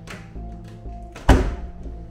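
Wooden kitchen cupboard door with glass panes being pulled open by its handle: a few small clicks, then one loud thunk about a second and a half in as the door comes free, stiff from not having been opened in a long time. Background music plays underneath.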